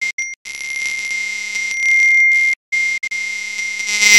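Smartphone ringing with an incoming call: a steady, high electronic ring tone that breaks off briefly a few times.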